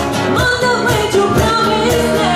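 Live unplugged rock cover: a woman sings lead over strummed acoustic-style guitars and a steady beat slapped on a cajon.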